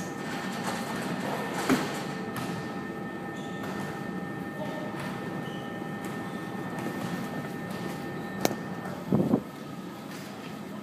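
Steady indoor room hum with a few steady tones underneath. A thud about two seconds in as the man drops from the dip bars to the floor, then near the end a sharp click and a burst of rubbing as the phone is picked up by hand.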